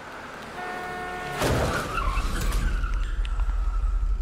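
Staged car crash from a road-safety advert: a short steady horn-like blare, then a sudden loud collision about a second and a half in, followed by a heavy low rumble and a thin ringing tone as the scene plays on in slow motion.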